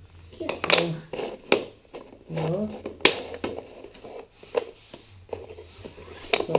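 Wooden IKEA Lillabo train track pieces knocking together as they are fitted by hand, a few sharp clacks, the loudest about three seconds in, with brief voice sounds in between.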